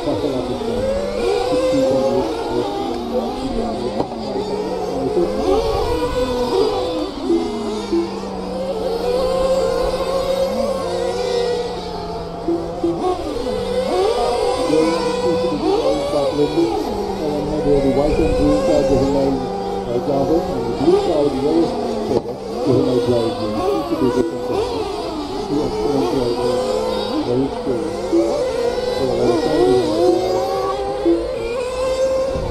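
Several radio-controlled race cars running on a track, their high motor whine rising and falling in pitch as they speed up and slow down, many overlapping.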